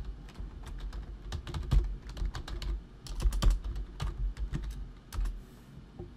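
Typing on a computer keyboard: runs of irregular key clicks with short pauses between them.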